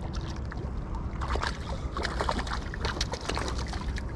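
Steady low rumble of wind and water around a small boat, with irregular light clicks and taps of fishing tackle as a hooked fish is being reeled in.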